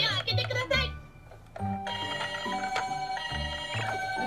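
Battery-powered toy ambulance's electronic sound chip playing steady beeping tones that hop between pitches, resuming after a short quiet gap near the middle.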